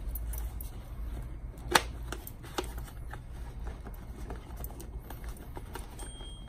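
Hands fitting Cardo Freecom 2 Plus intercom parts into a Shoei EX-Zero helmet's liner: small plastic clicks, taps and rustles. One sharp click a little under two seconds in is the loudest, all over a low steady hum.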